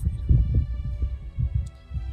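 Wind buffeting the microphone: an irregular, gusting low rumble.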